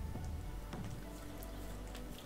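Soft background music, with faint wet ticks of a small chihuahua licking.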